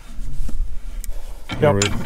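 Ratchet and removal tool turning a rusted precombustion chamber out of a Caterpillar D2 diesel cylinder head: a low metallic rubbing and scraping with a couple of faint clicks as the chamber works loose in its threads.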